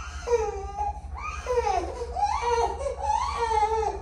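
Two-month-old baby crying in a run of wavering wails, broken by short catches for breath.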